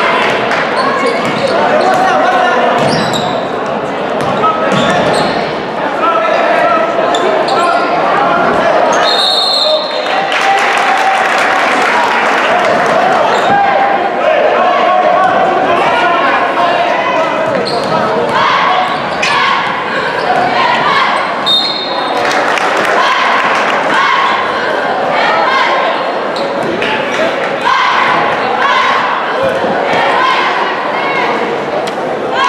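A basketball game in an echoing gym: the ball bouncing on the hardwood floor against a steady din of spectators' voices and shouts. Two short shrill blasts, about nine and twenty-one seconds in, are typical of a referee's whistle stopping play.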